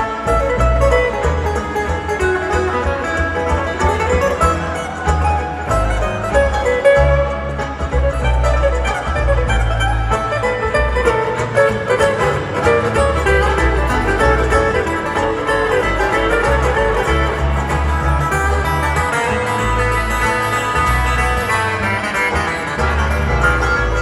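Live bluegrass band playing an instrumental break: acoustic guitar and fiddle with banjo over a steadily pulsing upright bass, heard through a loud arena sound system.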